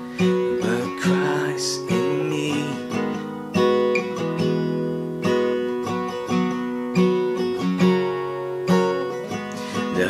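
Acoustic guitar strummed in chords, capoed at the fourth fret so the G-shape chords sound in the key of B, changing through G, Em7 and Cadd9 shapes with a few accented strums. A man sings the worship chorus over the guitar in the first few seconds.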